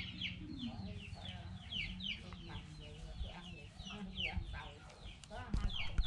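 Chickens calling: a steady run of short, high, falling calls, about three a second.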